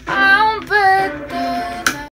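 A young female voice singing long, held vowel notes that slide up and down in pitch, with short breaks between them and a sharp click near the end.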